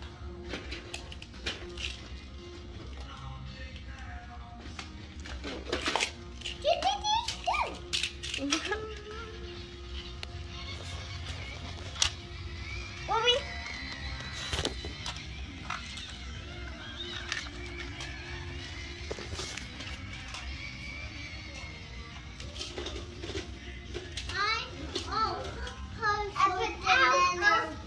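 Children playing with toys: a child hums and vocalises in short sliding notes among scattered clicks and knocks of plastic toy pieces, over a faint steady hum.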